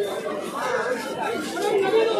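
People talking and chattering at a pet market stall, with no single clear speaker.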